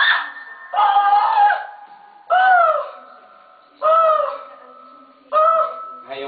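A woman's high-pitched wailing cries, about five in a row roughly every second and a half, each rising and then falling away.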